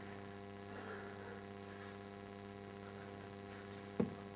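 Steady electrical mains hum: a low buzz with a ladder of evenly spaced overtones above it, unchanging throughout.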